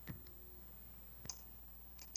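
Two faint clicks about a second apart, with a low steady hum underneath on a video-call audio line.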